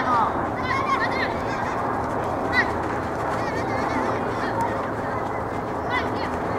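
High-pitched children's shouts and calls over a steady hubbub of voices on a playing field, with a single sharp knock about two and a half seconds in.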